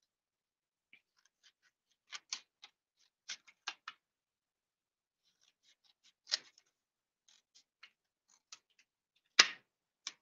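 Scissors snipping through a paper card to cut strips: short sharp snips, several in a quick run a couple of seconds in, one more midway, and the loudest single snip near the end.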